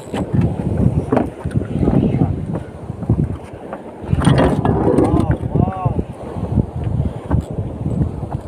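Gusty wind buffeting the phone microphone on an open boat, a low, uneven rumble, with a person's voice briefly about five seconds in.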